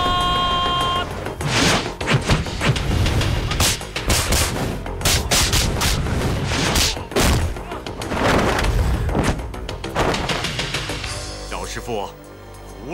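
Kung fu fight sound effects: a fast series of punches, hits and whooshes over backing music.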